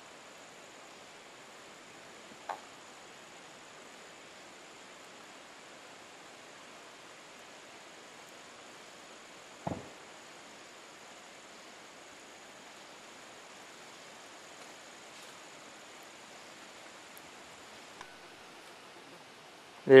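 Faint steady outdoor background hiss with no distinct source. Two brief knocks break it, a small one about two and a half seconds in and a louder, deeper one near the middle.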